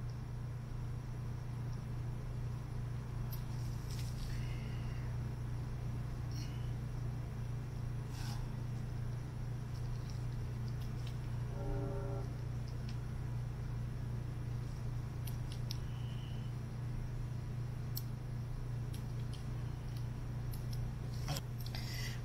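A steady low hum throughout, with faint, scattered small clicks and ticks from fine handling work: a flat ribbon cable being eased into its connector on a Sharp MT770 MiniDisc player's main circuit board with a pointed tool.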